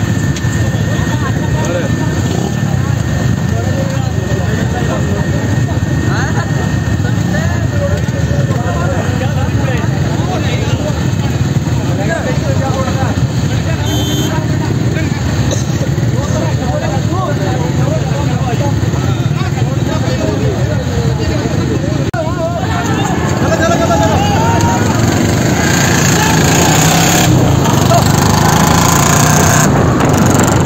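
Motorcycle engines running under a crowd of men's overlapping voices. About two-thirds of the way through, the engine noise gets louder and wind noise rises on the microphone as the motorcycles ride off.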